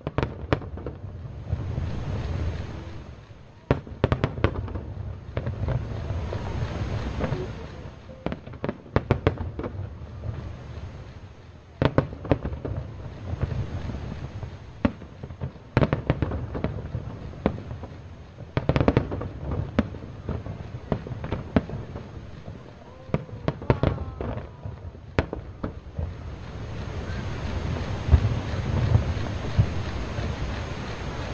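Aerial firework shells bursting: sharp bangs in quick clusters over a steady low rumble, with the heaviest volleys around 4, 12, 16 and 19 seconds in, and the rumble building again near the end.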